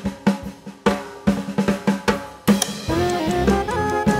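Background music: a drum beat with snare hits, then a cymbal crash about two and a half seconds in, after which a jazzy tune with bass and melody instruments comes in.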